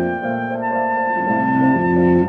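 Chamber trio of soprano saxophone, cello and piano playing slow sustained music: the saxophone moves to a new note about half a second in and holds it, while the cello plays a few long lower notes beneath.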